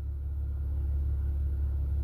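A steady low rumble in a short pause between speech.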